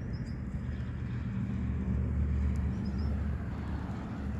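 Low rumble of a motor vehicle's engine running nearby, growing louder toward the middle and then easing off slightly.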